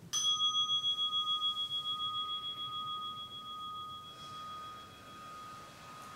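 A meditation bell struck once. Its ringing tone wavers and slowly fades, marking the end of a 30-minute sitting.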